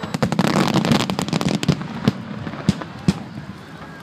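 Aerial fireworks bursting: a dense rapid run of crackling bangs through the first two seconds, then a few single sharp bangs.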